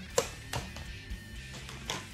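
Background music playing under a few sharp clicks and crackles from a clear plastic takeout container lid being pulled open, the loudest about a quarter second in.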